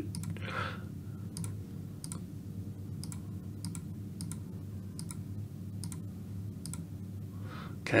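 Computer mouse clicking at an irregular pace, a dozen or so short sharp clicks, over a low steady hum.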